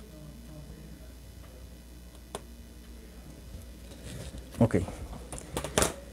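Quiet cutting of a cardstock pattern with a craft knife drawn along a steel ruler on a zinc-sheet table. It is mostly faint, with a light click about two and a half seconds in and a couple of sharp clicks near the end.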